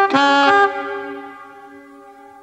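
Old Ford Consul and Zephyr car horns rigged together as a scrap-built horn section, sounding several steady notes at once in one loud blast that stops about two thirds of a second in, then fades away.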